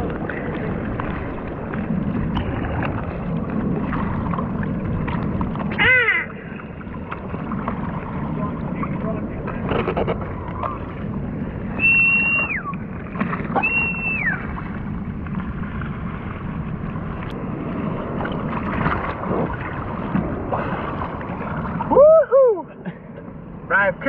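Seawater washing and lapping around a camera held at the surface. A short falling cry sounds about six seconds in, two high held calls that drop off come around twelve and fourteen seconds, and a brief voice-like sound comes near the end.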